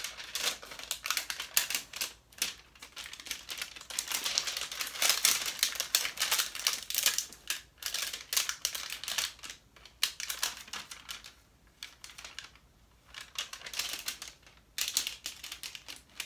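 Protective plastic wrap being worked and peeled off a drone's remote controller: rapid, irregular crinkling and crackling, with a quieter spell about eleven seconds in before it picks up again.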